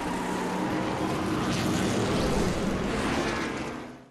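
Race car engine noise laid under an animated logo intro as a sound effect, steady, then fading out just before the end.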